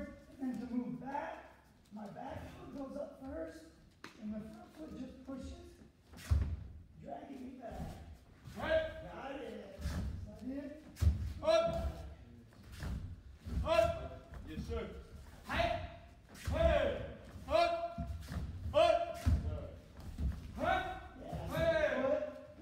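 Dull thuds of kicks and feet landing on taekwondo chest protectors and foam mats in a large hall. From about the middle on, short voice calls come about once a second.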